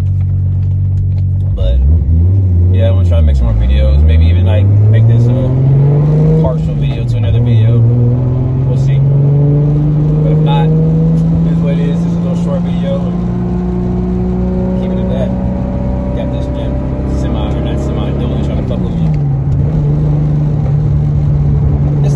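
High-horsepower car engine heard from inside the cabin, pulling away and accelerating through the gears of its T-56 six-speed manual: the pitch climbs, falls at shifts about four and seven seconds in, then settles into a steady cruise that slowly rises, with a brief dip near the end.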